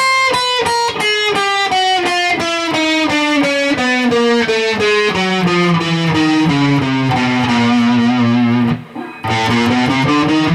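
Electric guitar playing a chromatic exercise, four notes per string, as single picked notes stepping steadily downward in pitch at about four notes a second. After a brief break near the end the notes start climbing back up.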